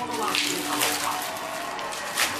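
Clear plastic packaging and foil retort pouches crinkling and rustling as they are handled and pulled apart.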